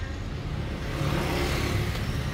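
Motor vehicle engine running steadily, with a swell of rushing noise around the middle that rises and falls away.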